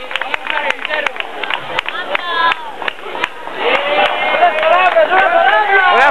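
A crowd clapping and talking, then many voices shouting together from about halfway, growing louder toward the end.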